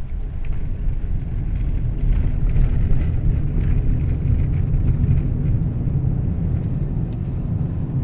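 Low, steady rumble of a car on the move, heard from inside the cabin: road and engine noise, a little louder from about two seconds in.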